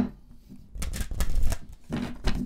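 A deck of cards being shuffled by hand: a quick flurry of crisp card slaps and riffles about a second in, with more starting near the end.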